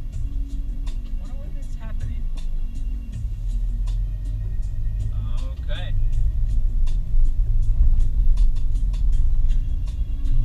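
Low, steady rumble of a car's engine and tyres heard from inside the cabin while driving slowly, growing louder about three seconds in. Two brief snatches of a voice or music come through.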